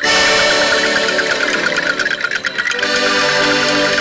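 A traditional Aosta clique band playing: held chords over a fast, even patter of drum strokes. The music comes in abruptly at the start.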